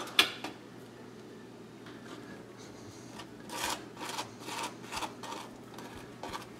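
A sharp click just after the start, then a table knife scraping butter across a slice of crisp toasted French toast in a run of short strokes in the second half.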